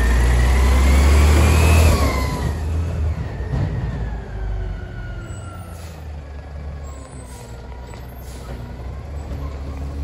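Diesel engine of a Mack LEU garbage truck accelerating past, loud at first, with a whine that rises and then falls in pitch over the first two seconds. The sound then fades as the truck pulls away.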